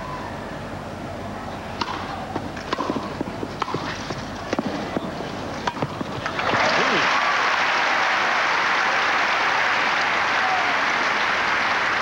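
Tennis rally on a grass court: a run of sharp racket-on-ball strikes over a low crowd murmur, then about six and a half seconds in the crowd breaks into steady applause as the point ends.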